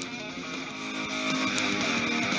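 Guitar music playing from the Onforu portable Bluetooth speaker, growing steadily louder as its volume-up button is held down.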